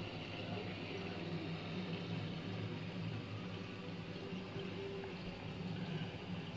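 Steady low hum with an even watery hiss from a running saltwater aquarium's pumps and water circulation.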